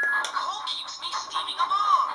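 A battery-powered talking Thomas the Tank Engine toy's small speaker playing a short tinny electronic tune between its recorded phrases, opening with a brief steady tone.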